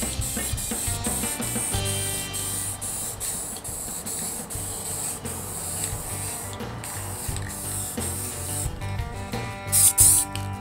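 Hiss of an aerosol spray-paint can sprayed in short repeated bursts, laying camouflage paint on an air rifle, under background music with a steady beat.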